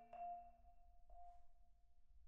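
A pause in solo marimba playing: the last struck notes ring out and fade, leaving one middle bar's tone lingering faintly into near silence.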